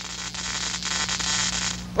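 Steady static-like hiss over a low electrical hum, cutting off suddenly just before the end.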